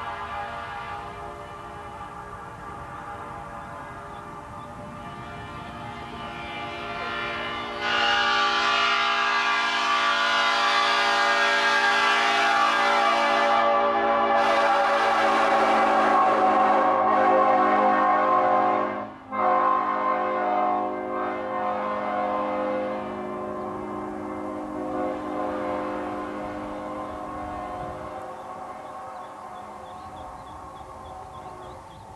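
An old cast Nathan P01235 five-chime locomotive air horn sounding one long chord. It swells much louder about eight seconds in, breaks off briefly a little after the middle, then sounds on more quietly and fades.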